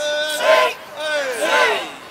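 A group of karate students shouting together, two loud calls a little under a second apart, in time with their push-ups.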